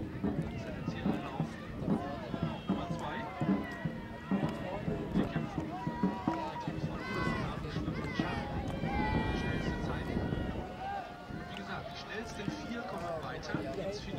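Many voices shouting and cheering at a dragon boat race. For the first half the shouts come in a regular beat, about two a second, then give way to longer drawn-out yells.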